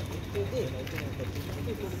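Indistinct background voices over a steady low hum, with a faint knock about a second in.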